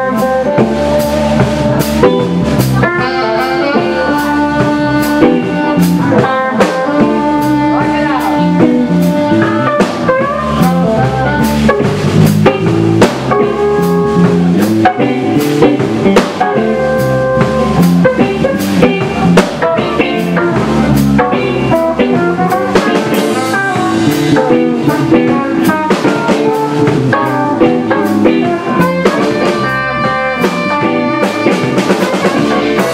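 Live band playing: electric guitars over a drum kit, with a lead guitar bending notes and cymbals crashing throughout.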